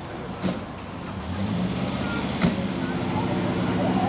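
Subaru 360 van's small air-cooled two-stroke two-cylinder engine running steadily, growing louder from about a second and a half in, with a single sharp knock midway.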